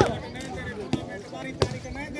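Sharp smacks of hands striking a small volleyball, three in the two seconds with the loudest near the end, over the voices of a crowd.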